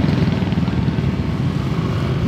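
Motorcycle engine idling close by, a steady, fast, even low pulsing.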